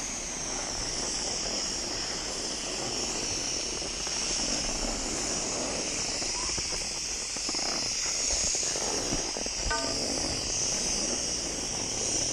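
Skis sliding and carving on packed snow, a steady hiss, with a low rumble of wind on the camera microphone. A brief pitched sound cuts through about ten seconds in.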